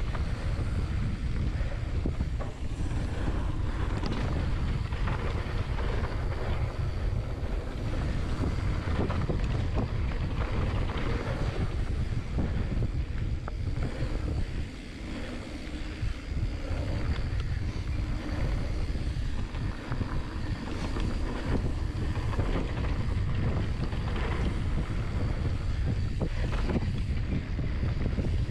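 Wind buffeting the microphone over the rumble of a mountain bike descending dirt singletrack at speed, with tyres on the dirt and frequent small rattles and knocks from the bike over bumps. The noise eases briefly about halfway through.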